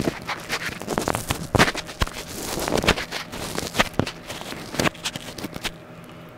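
Close-up handling noise on a BOYA BY-M1 lavalier microphone as a fur windscreen is worked over its capsule: irregular scratching, rubbing and crackling clicks picked up directly by the mic itself.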